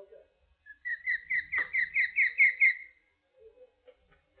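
Osprey calling: a run of about nine sharp, down-slurred whistled chirps, about four or five a second, growing louder toward the end.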